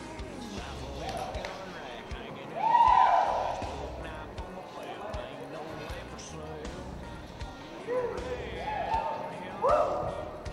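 People's voices calling out over background music: one loud, drawn-out shout about three seconds in and a few shorter calls near the end, with dull thuds underneath.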